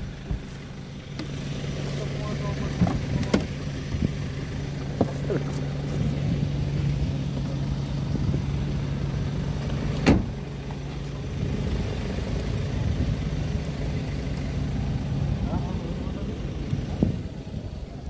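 Motor vehicle engine idling with a steady low hum that dies away near the end, with a single sharp knock about ten seconds in.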